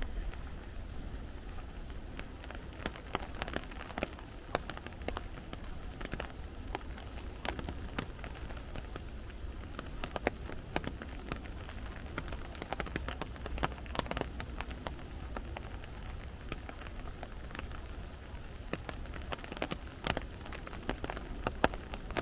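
Rain falling through forest trees, with big drops landing close by in irregular sharp taps over a steady low rumble.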